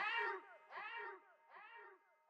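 Outro of the song: a short rising-and-falling pitched cry repeating with an echo effect about every 0.8 seconds, each repeat fainter, fading out.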